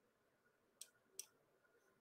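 Near silence broken by two faint, sharp computer mouse clicks about 0.4 s apart, a little under a second in.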